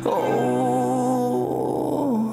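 Male singing voice holding a wordless note with vibrato for about a second and a half, over a sustained low note of the backing music.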